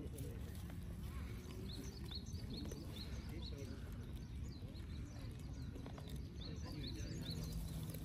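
Sika deer close by tearing and chewing leafy branches, under a steady murmur of people's voices in the distance and faint, repeated high chirps.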